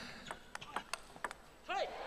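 Table tennis ball clicking off the bats and table in a rally, a quick run of sharp clicks about four a second that stops after about a second and a half.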